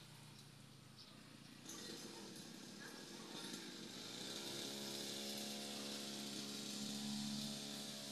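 Faint hum of a distant small engine that comes in about four seconds in, rising slightly and then holding a steady pitch, over low background hiss.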